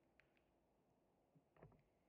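Near silence, with a few faint clicks, then a quick cluster of soft taps about one and a half seconds in: a small mallet tapping the copper end windings of an electric motor stator into shape.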